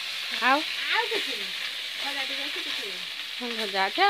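Food pieces frying in hot oil in a metal wok over a wood fire, a steady sizzle as they are stirred. Short bits of a voice sound over it, loudest about half a second in and near the end.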